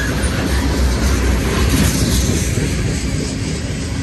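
Freight train of covered hopper cars rolling past at close range: a steady low rumble of steel wheels on rail, with a noisy rattle over it.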